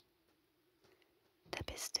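A woman's close-microphone ASMR whisper: a quiet pause with a faint steady hum, then, about one and a half seconds in, a brief crackly burst right on the microphone that runs into a whispered word near the end.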